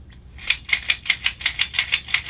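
Fiber optic connector cleaning tool clicking as it cleans a dirty connector end face: a rapid run of sharp clicks, about seven a second, starting about half a second in.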